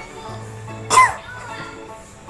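A child coughing once, short and loud, about a second in, over background music.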